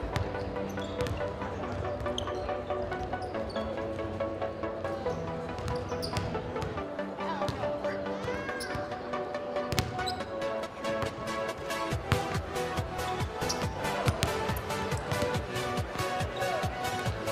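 Several basketballs bouncing on a hardwood gym floor, the bounces coming thicker in the second half, over music.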